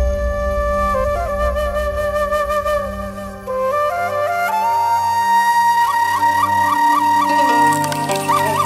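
Instrumental passage of Vietnamese folk-style music led by a bamboo transverse flute (sáo trúc) playing a melody over accompaniment. The melody climbs to a long held high note decorated with quick repeated trill-like ornaments in the second half, while the low accompaniment drops away about four seconds in.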